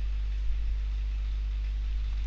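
Steady low hum with a faint hiss: the background noise of the narration recording, between words.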